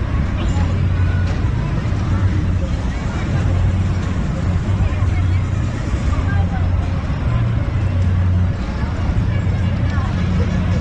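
Outdoor carnival ambience: scattered crowd voices over a loud, steady low rumble.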